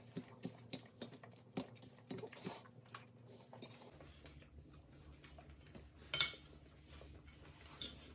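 Metal forks clinking and scraping on ceramic plates of fries, cheese curds and gravy: light, irregular clicks, busiest in the first half. A low steady hum comes in about four seconds in.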